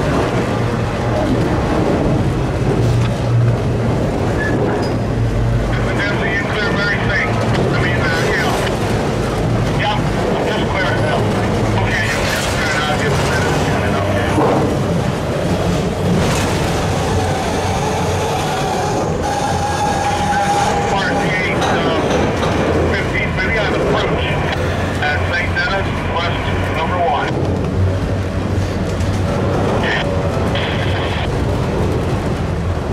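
Freight train of autorack cars rolling past close by: a steady rumble and clatter of wheels on the rails, with short bursts of high-pitched squealing several times and one longer held squeal in the middle.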